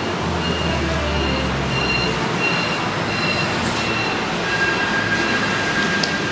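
Steady background noise of a busy indoor public concourse, with a low rumble during the first two seconds.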